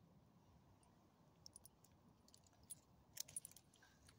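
Faint, light jingling of the metal ID tags on a small dog's collar, a few scattered clicks that cluster in the second half as the dog moves and rolls over.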